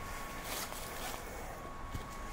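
Quiet footsteps of a person walking along a leafy woodland path, over a low steady background rumble.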